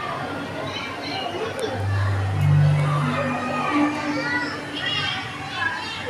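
A group of children chattering and calling out together over background music, with low held bass notes in the middle.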